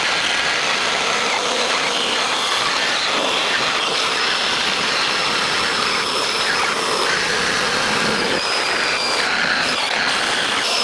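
Two small battery-powered handheld chainsaws, a Yardforce and a Husqvarna Aspire, running together with their chains cutting into a slab of oak: a steady, even buzz of motors and chains in hardwood.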